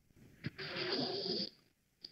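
A single faint breath into a close microphone, about a second long, opening with a small mouth click.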